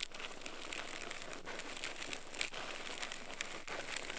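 Dry scratching and crackling of a thin bamboo stick rubbing inside an ear canal, heard very close up. It is a continuous scratchy rustle with sharp clicks about once a second.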